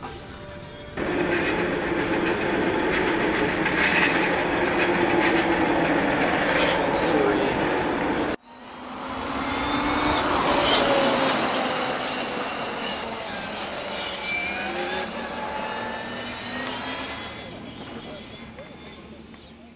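Small open-wheel race car's engine driving past, swelling to its loudest about three seconds after a sharp cut in the sound, then fading as the car pulls away, its pitch rising several times as it revs. Before the cut, a stretch of loud, noisy sound.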